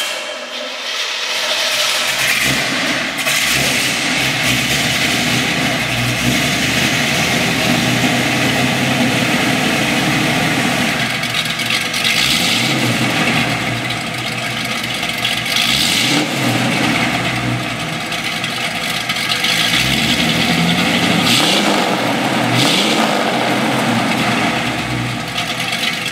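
A carbureted 350 cubic-inch Chevrolet V8 in a 1932 Ford hot rod is started and then runs, revved up and let back down several times, heard from behind its twin exhaust pipes.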